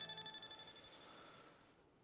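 The last held notes of a TV news programme's opening theme music fading away, dying out about a second and a half in, then near silence.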